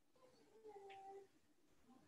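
Near silence: room tone, with one faint, brief pitched sound a little over half a second in.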